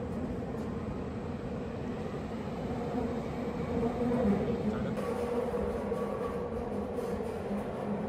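Electric commuter train running, heard from inside the carriage: a steady low rumble with a constant hum.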